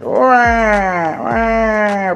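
Siren Head monster wail for a toy Siren Head figure: two long, loud wailing calls, each falling slowly in pitch, the second starting about a second in.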